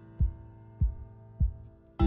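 Background music: a low, soft beat about every 0.6 seconds, three beats in all, under held keyboard chords that fade away. A new chord strikes right at the end.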